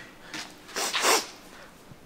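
A man sniffing at a drink in a glass: a short sniff, then a longer, stronger one about a second in.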